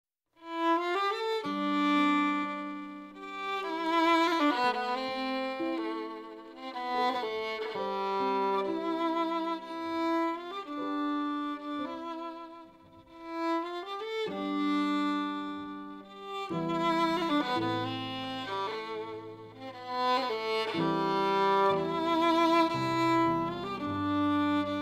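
Fiddle playing a slow air in long, held notes with vibrato, with a short lull in the middle; lower sustained notes join in about two-thirds of the way through.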